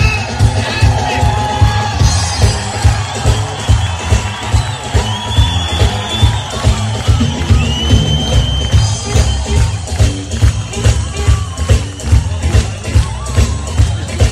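Live electric blues band playing a boogie: bass and drums keeping a steady beat under electric guitar lines, with the crowd cheering.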